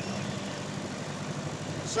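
A 25 hp Mercury outboard motor running steadily, a low even hum, with water noise as the aluminium boat moves through the chop.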